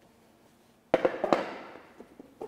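A sudden cluster of sharp knocks about a second in, followed by a rustle that fades over half a second: handling and clothing noise as a robed man moves and bends down to sit.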